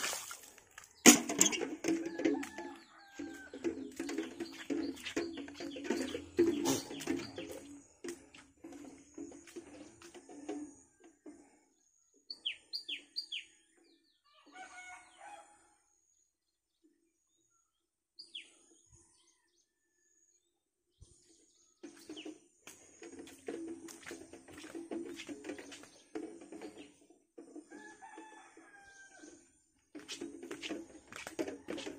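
Chickens in a yard, a rooster crowing and hens clucking, with a small bird giving three quick falling chirps about twelve seconds in. Close knocking and splashing noise covers the first eight seconds and comes back in the last eight.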